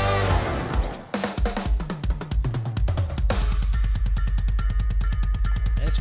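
A live band's drum kit with a saxophone section: the horns drop out about a second in, leaving scattered drum hits, then from about three seconds in the kit plays a fast, even pattern with bass drum and cymbals over a steady low bass note.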